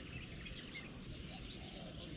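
Faint outdoor background hum with small birds chirping now and then.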